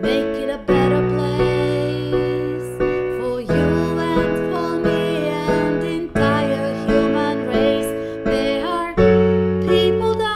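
A woman singing a slow ballad while accompanying herself on a digital piano, with sustained chords struck every second or two.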